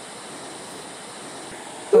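Steady wash of distant ocean surf, an even background noise with no distinct events.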